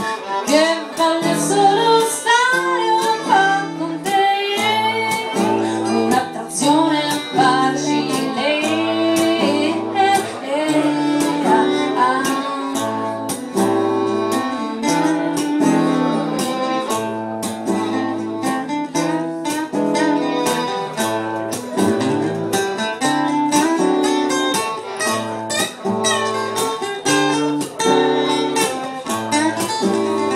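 Live acoustic song: an acoustic guitar strummed in a steady rhythm under a woman's sung melody.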